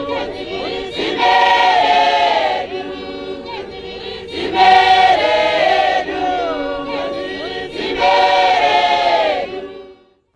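Church congregation singing a hymn a cappella, with no musical instruments, many voices together in loud phrases with quieter stretches between. The singing fades out near the end.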